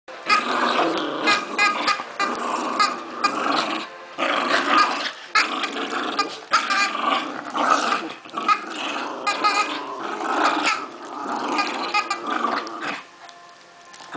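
Two small dogs growling during a tug of war over a chew toy, with a few brief breaks, falling quieter just before the end.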